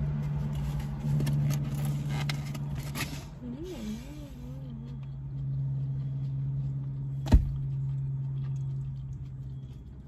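Steady low hum of a car's engine idling, heard from inside the cabin, with light taps and rustles of plastic forks in foam takeout containers. A short hummed 'mm' comes about three and a half seconds in, and a single sharp click about seven seconds in.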